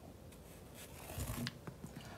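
Tennis ball rolling down a cardboard ramp with a faint low rumble, then a few soft taps as it bounces over a wooden block onto the tile floor.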